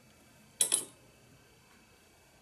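A quick double clink of hard objects knocking together, about half a second in, with a short ringing tail.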